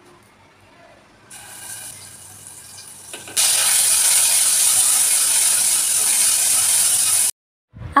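Ground spice paste sizzling in hot oil in a small saucepan on a portable gas stove, being sautéed and stirred with a wooden spatula. A quieter sizzle turns into a loud, even sizzle about three seconds in, which cuts off suddenly near the end.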